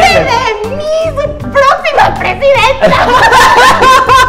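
Several people laughing and snickering over background music.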